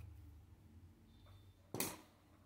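A single short, sharp click or knock near the end, like a small hard object tapped or set down, over a faint low hum.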